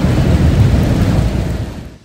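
Thunder rumbling loudly over steady rain, the low rumble easing off near the end.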